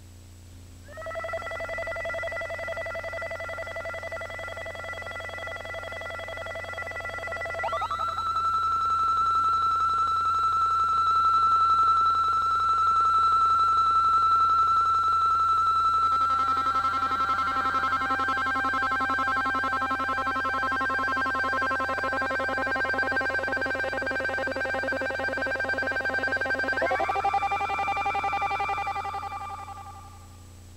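Electroacoustic music of sustained synthesizer tones held as chords that change about a second in, near 8 s, at 16 s and near 27 s, each new chord sliding up into pitch, then dropping away just before the end. A steady low hum lies under it throughout.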